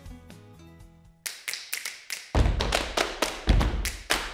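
Soft background music tails off, then about a second in a short percussive jingle starts: a rapid run of sharp taps, joined partway through by deep thumps.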